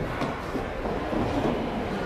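Steady background din of a large exhibition hall, a low rumbling murmur with faint distant voices.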